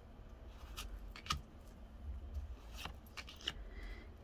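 Trading cards being handled in a stack, sliding and flicking against each other: a few short soft clicks and scrapes, the loudest about a second in, over a faint steady hum.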